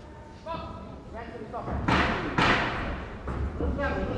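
Shouting voices echoing in a large hall during an amateur boxing bout, with two loud thumps about half a second apart near the middle.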